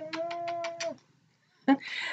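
A black-and-white domestic cat meowing while being held: one long, even call that stops about a second in, then a short, rougher call near the end.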